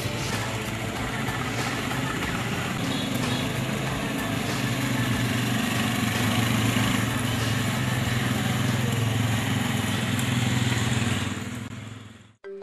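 Motorcycle engines running in a steady drone as the bikes ride along, fading out near the end.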